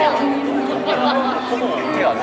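Live pop ballad: a woman singing held notes into a microphone over backing music, with audience chatter mixed in.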